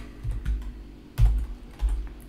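Computer keyboard being typed on: a handful of separate keystrokes, the loudest a little past halfway, each with a low thud.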